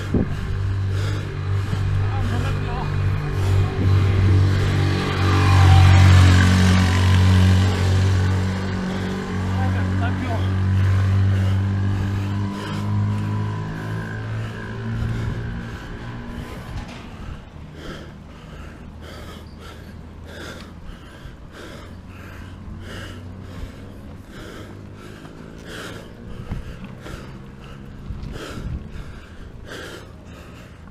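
A car's engine approaching and passing, loudest about six seconds in and dying away by about the middle. After that comes a cyclist's heavy panting on a steep climb, about one breath a second.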